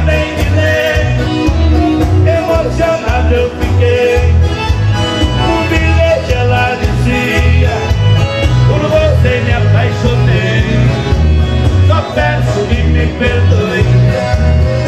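A small country-style band playing live: piano accordion and acoustic guitars over a steady bass beat, with a male singer.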